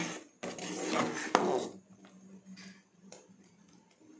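A large metal spoon stirring and scraping through hot green gelatin mixture in a steel pot, with one sharp clink against the pot a little over a second in. After about two seconds it turns quiet, with only a few faint taps over a steady low hum.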